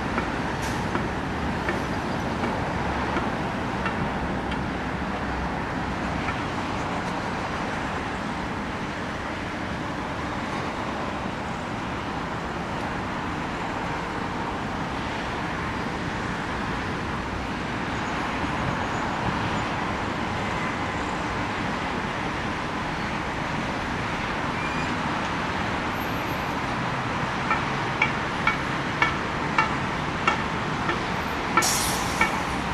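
Steady hum of distant city traffic rising from the streets below. Near the end, a run of sharp clicks comes about two a second.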